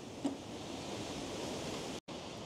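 Wind blowing, a steady rushing hiss that builds slightly and cuts off abruptly at the very end.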